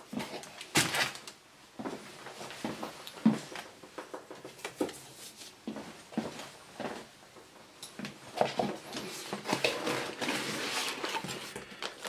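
A cardboard graphics card box being handled and opened: scattered knocks and clicks, then a longer run of rustling and scraping of cardboard and packaging near the end.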